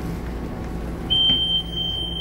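Inside an electric commuter train standing at a station, a steady low hum runs throughout. About a second in, a single high, steady warning tone starts and holds: the door-closing signal of a Taiwan Railway EMU700-series commuter train about to depart.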